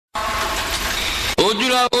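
A steady noisy hum with a low rumble for just over a second, then a man's voice starts singing the opening line of an Urdu naat, holding long bending notes.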